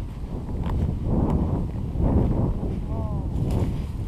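Strong wind buffeting a GoPro's microphone, a steady low rumble that rises and falls.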